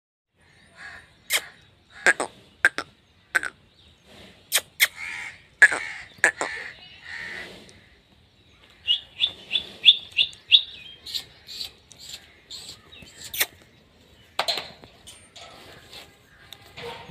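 Birds calling and chirping, with a quick run of high chirps about nine seconds in and several sharp clicks scattered among the calls.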